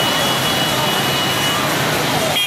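Busy street noise: a steady roar of dense motorbike traffic mixed with crowd voices, with a thin steady high tone through the first second and a half.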